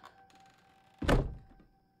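A single heavy impact hit, a trailer sound-design thud, about a second in, fading over about half a second. Beneath it is a faint held tone.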